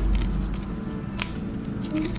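Light rustling of a paper wrapper with a few small sharp clicks as the protective paper strip is peeled off and the plastic AirPods charging case is handled; the sharpest click comes a little past halfway.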